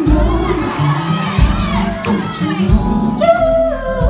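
Live soul performance: a male singer's voice over the band while the audience cheers and whoops. Near the end he starts a long, high held note.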